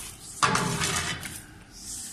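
A metal shovel scraping thick soot out of an oil-fired boiler's combustion chamber, starting with a sudden sharp scrape about half a second in. The soot is unburnt fuel that has built up from incomplete combustion.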